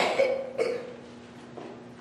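A man coughing and clearing his throat: two bursts about half a second apart, the first the loudest.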